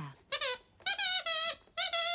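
Glove-puppet dog's squeaker voice: three high squeaks that waver in pitch, the middle one the longest.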